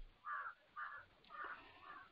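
Faint background animal calls: four short, harsh calls about half a second apart.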